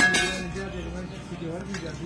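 A sharp metallic clink with a brief ring at the start, as steel pylon bars knock together, followed by voices talking in the background.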